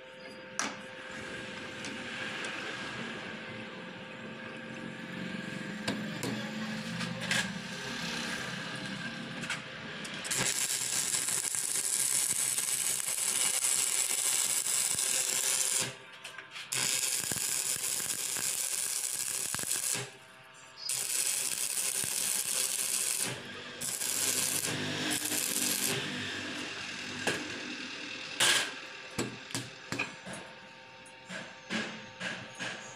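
Stick (arc) welding on a steel block: the electrode's arc crackling and hissing in runs of a few seconds, from about ten seconds in, each run breaking off sharply before the next strike. Before that, quieter, lower workshop handling sounds.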